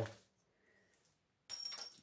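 A small eighth-inch brass pin drops and strikes the floor about one and a half seconds in: a sharp click with a brief high metallic ring that fades quickly.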